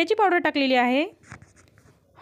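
A woman speaking briefly, then a few faint short scratchy sounds.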